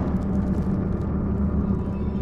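Low, steady rumbling drone of trailer sound design, its weight in the deep bass, with no clear melody.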